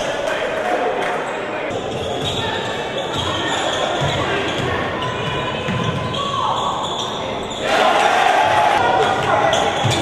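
Basketball game in a gymnasium: a ball bouncing on the hardwood court amid crowd chatter that echoes in the hall, the crowd noise growing louder about eight seconds in.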